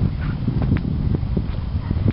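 Footsteps crunching on loose, gravelly ground, several uneven steps, over a low rumble of wind buffeting the microphone.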